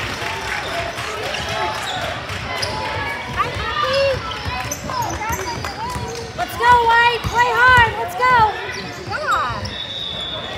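A basketball being dribbled on a hardwood gym floor during a youth game, with players' and spectators' voices calling out over it. The voices are loudest about seven to eight and a half seconds in.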